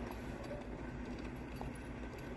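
Horse and buggy passing: faint hoof steps and wheel noise on a packed-snow lot, over a low steady rumble.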